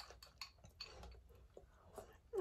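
Near silence with a few faint, scattered clicks of metal spoons against ceramic bowls while eating.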